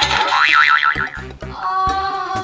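Background music with a cartoon 'boing' sound effect: a wobbling, springy tone in the first second, followed by a few held tones.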